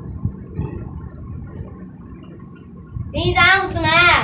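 Low room noise for about three seconds, then a high-pitched voice speaking loudly near the end.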